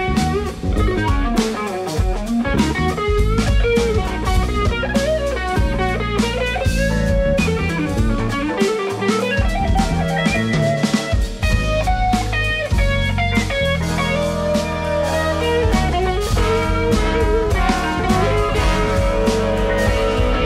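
Live big-band jazz: an electric guitar plays a solo line over electric bass and drum kit.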